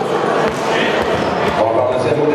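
A man's voice over a microphone and PA in a large, echoing sports hall, with a few dull low thuds underneath.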